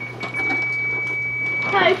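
A noisemaker toy sounding one steady high-pitched tone for about a second and a half, cutting off just before the end.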